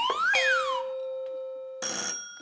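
Sound effect of a fairground test-your-strength machine: a rising whistle as the puck climbs, then a bell ringing steadily. A second, brighter bell strike comes near the end.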